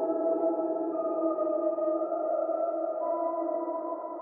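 Dark ambient music: sustained synthesizer chords held as a drone, with single notes in the chord shifting slowly and no drums.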